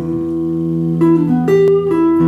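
Telecaster-style electric guitar playing a blues riff with sustained notes, changing notes about a second in, then a few sharp picked strokes.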